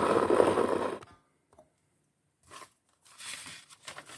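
Paper pages of a paperback magazine being handled and turned: a loud rustle in the first second, then a quieter rustle near the end.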